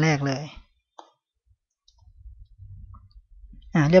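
A single sharp click about a second in, from picking a file name out of a code editor's autocomplete list, followed later by a faint low rumble.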